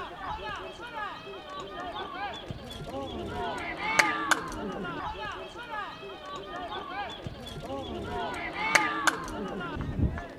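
Overlapping shouting voices of players and spectators on a football pitch. There are two pairs of sharp knocks, one about four seconds in and one about nine seconds in.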